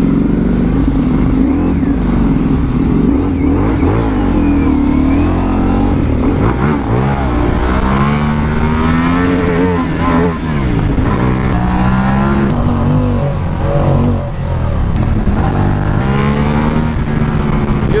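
Ducati Multistrada V4 Pikes Peak's V4 engine pulling away from a stop through the gears, its pitch rising and falling several times with throttle and shifts, and in second gear near the end.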